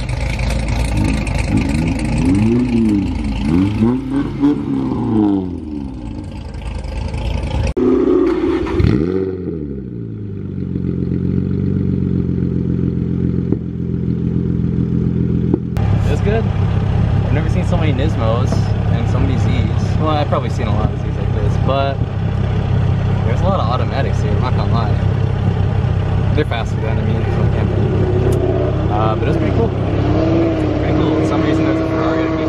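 Nissan 350Z VQ V6 engines at a car meet: an engine revved repeatedly, its pitch rising and falling, then a steady idle drone heard inside a 350Z's cabin.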